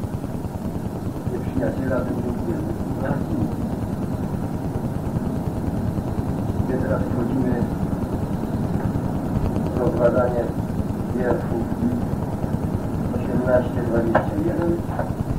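Indistinct, muffled speech on an old cassette-tape recording, half-buried under a steady low rumble.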